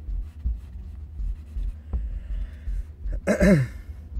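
Faint pencil strokes on a sketch pad over a low, uneven thumping rumble. A little past three seconds in, a man clears his throat with a short, breathy voiced sound.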